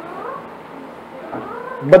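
Two faint animal calls, each rising then falling in pitch, in a pause between speech.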